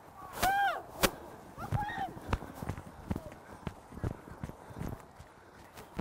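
Faint high-pitched shouts of young rugby players on the field: two short calls in the first two seconds. Scattered sharp clicks and knocks run close to the microphone throughout.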